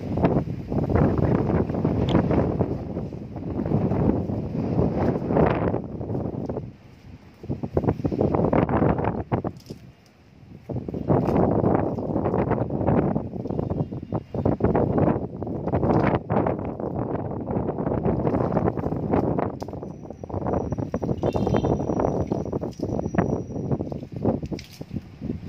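Wind buffeting the microphone in gusts, dropping away briefly twice, over water being poured from a plastic bowl onto the soil of a newly potted small-leaf đinh lăng (Polyscias) bonsai.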